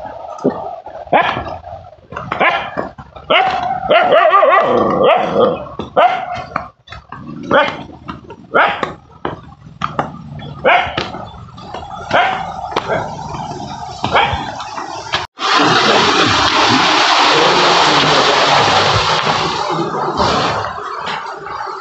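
A dog barking and whining over and over, short calls about a second apart. About fifteen seconds in, the sound cuts abruptly to a steady, loud rushing noise.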